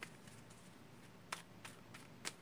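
A deck of tarot cards being shuffled by hand: a few faint, soft clicks of cards slipping against each other, the clearest a little past the middle and two more near the end.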